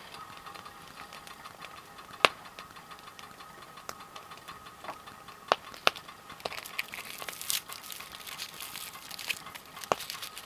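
A stainless camp kettle set back down on a canister gas stove with a metallic clank, followed by a few sharp clicks and taps of metal camp gear over a faint steady tone. Fine crackling comes in over the last few seconds.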